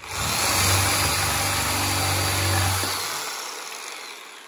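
Corded reciprocating saw with a bi-metal blade starting up and sawing through a wooden board, loud and steady for about three seconds. Near the end the trigger is let go and the motor winds down.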